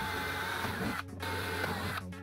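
Handheld power drill boring small holes into a plywood board, the motor whining under load; it stops briefly about a second in, then runs again.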